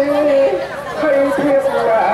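A man chanting a Buddhist invocation into a microphone in long held, sliding notes. He breaks off briefly at under a second in, then resumes at a new pitch.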